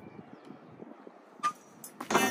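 Low outdoor rumble with one short, sharp knock about one and a half seconds in and a fainter click just after, from a metal pull-up bar as a man lowers from a muscle-up to a hang.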